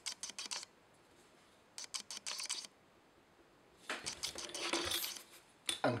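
Light clicks and taps of small modelling tools, a steel rule and a pointed marking tool handled on a plastic strip over a cutting mat, in three short bursts.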